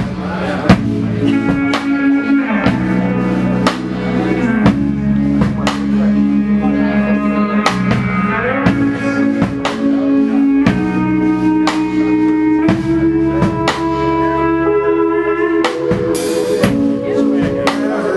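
A live rock band playing: a drum kit keeping a steady beat with cymbal hits about twice a second under held electric guitar chords and bass that change every second or two.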